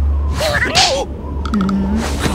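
Cartoon larva voices: short gliding vocal noises with a sneeze-like burst about half a second in, then a short held hum near the end, over a steady low rumble of blizzard wind.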